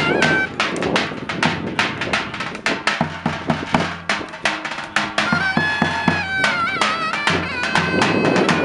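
Turkish folk music on drum and reed pipe, in the davul-and-zurna style. Rapid drum strokes run throughout. A high, wavering reed melody breaks off about half a second in and comes back at about five seconds.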